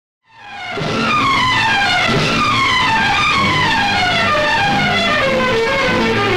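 A child's long scream, falling steadily in pitch over several seconds, over background film music.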